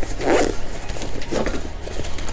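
Zipper on a fabric camera shoulder bag being pulled open, in two short pulls about a second apart.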